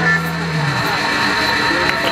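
A rock band's last chord ringing out through the amplifiers, electric guitars and bass held. The low bass note fades out under a second in, while a high steady tone keeps ringing.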